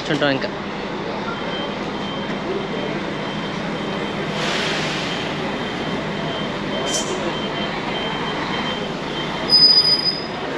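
Bus station ambience: a steady rumble of coaches with a faint, broken high beeping, a rush of hiss about halfway through, and a short, loud high-pitched beep near the end.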